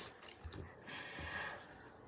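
A short breathy exhale lasting under a second, about a second in, preceded by a few faint ticks.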